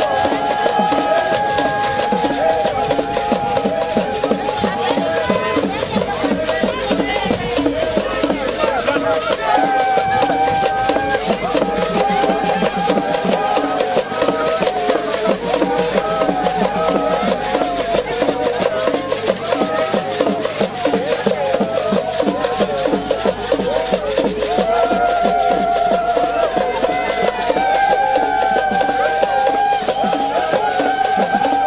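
Traditional Congolese group singing: a chorus of women's voices singing held, sliding lines over a steady beat of hand drums and shaken rattles.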